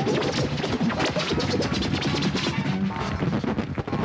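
DJ music from turntables and a mixer, with record scratching and many sharp crashing hits over the beat.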